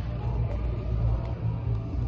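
Steady low background rumble, with no distinct knocks or clicks.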